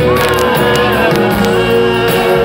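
Live rock band playing at full volume, with electric guitars, bass and drums, recorded from the audience. A long sliding note rides over the band in the first second.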